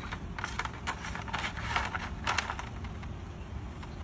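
Soft scraping and rustling handling noises in a few short, irregular bursts.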